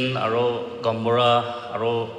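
Speech only: a man speaking into a microphone, drawing out long held syllables with short breaks between them.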